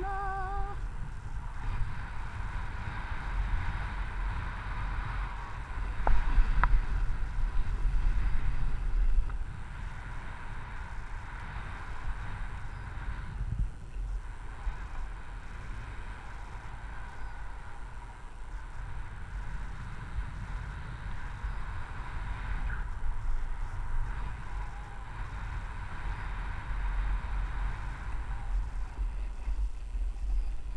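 Wind rushing and buffeting over an action camera's microphone as a skier descends, with the skis hissing over snow. It grows louder for a few seconds about six seconds in.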